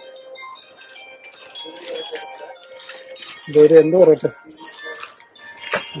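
Small metal motorcycle spare parts clinking and rattling as they are handled on a shop counter, with crinkling of plastic parts bags. A brief loud voice breaks in about halfway through, over faint background music.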